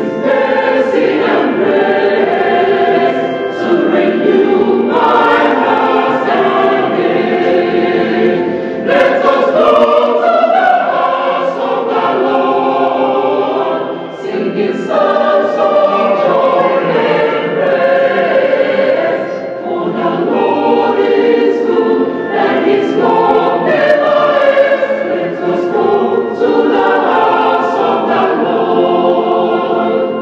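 Mixed choir of women's and men's voices singing a Catholic entrance hymn in parts, in long phrases with brief breaks between them.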